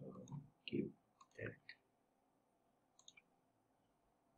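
Faint computer mouse clicks: a few short clicks with soft knocks in the first second and a half, then a quick run of three clicks about three seconds in.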